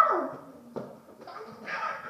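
High-pitched, wordless voice-like cries: one ends with a falling wail just after the start, and another starts, rising, near the end.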